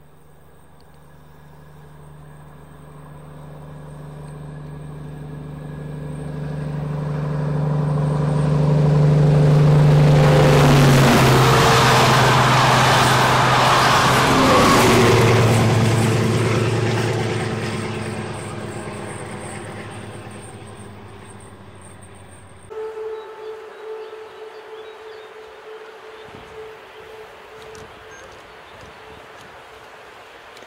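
A vintage red-and-cream DB diesel multiple-unit train approaching and passing: its engine drone grows steadily louder, is loudest for several seconds in the middle with rail noise, drops in pitch as it goes by, and fades away. Near the end the sound cuts abruptly to a much quieter scene with a steady hum and a few irregular knocks.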